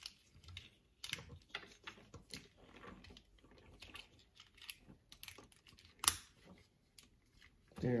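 Small plastic Transformers toy being transformed by hand: its jointed parts give a run of light, irregular clicks and snaps as they are moved into place, with one sharper snap about six seconds in.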